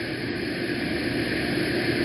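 Steady background hiss and low hum with no distinct event: the even noise floor of the recording.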